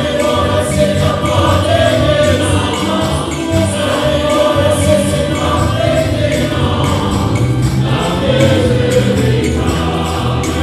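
A choir singing a gospel song in held, sustained notes over keyboard and a steady beat.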